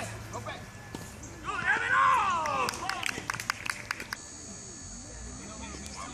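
A loud shout about a second and a half in, followed by a quick run of about ten sharp claps over a second and a half, then a faint steady high whine.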